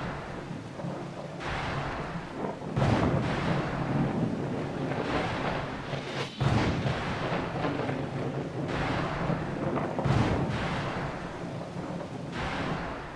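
Dark, thunder-like rumbling soundtrack over a low steady drone. A deep boom strikes suddenly about every three and a half seconds and rolls away.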